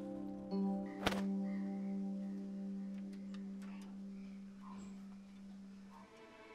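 Soft drama background music of sustained held chords, a low note entering about half a second in and slowly fading, with a single sharp knock about a second in.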